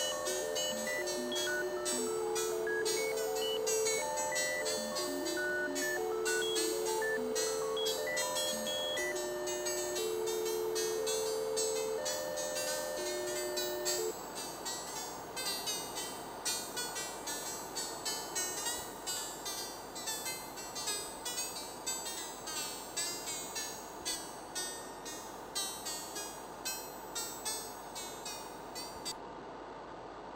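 Computer-synthesised electronic music generated live by a ChucK program: a melody of held, stepping synth notes over a dense patter of short, high plucked notes and clicks. About halfway through the held notes stop and the music gets quieter, as shreds are removed from the ChucK virtual machine. Near the end the highest sounds drop out.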